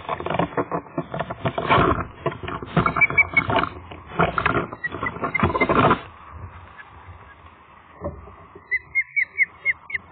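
Rapid, loud flapping and buffeting close to the microphone as an osprey flies in, stopping about six seconds in when it lands on the nest. Near the end comes a quick run of about six short, high osprey chirps.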